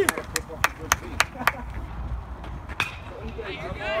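Hand claps in a quick even rhythm, about three a second, for the first second and a half of a cheer, then a single clap near three seconds, over a low steady rumble.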